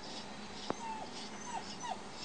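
Injured Siberian husky whimpering: three short, high whines, each falling in pitch, the first about a second in and two more near the end. A single sharp click comes just before the first whine.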